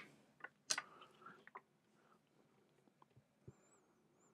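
Near silence with a few faint, sharp clicks in the first second and a half and one more near the end.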